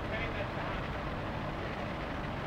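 Indistinct voices over a steady low rumble of outdoor background noise.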